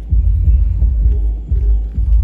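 Deep bass from a shop stereo's 18-inch subwoofers, heard from outside through the building's metal walls: loud, pulsing low bass with the higher parts of the music muffled away.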